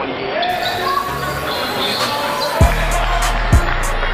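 Background music with a sung vocal line; the deep kick-drum beat drops out for the first part and comes back about two-thirds of the way through.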